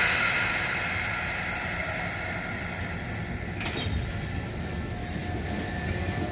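Keisei electric commuter train starting away from a stop: a sudden loud burst of compressed-air hiss, typical of its air brakes releasing, fades over about three seconds. A click follows about three and a half seconds in, then the rumble of the train beginning to roll.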